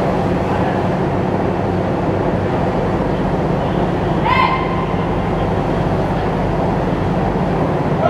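Assault amphibious vehicle's diesel engine running steadily as it manoeuvres in the water, echoing in the enclosed well deck of a dock landing ship. A brief high-pitched call rings out about four seconds in.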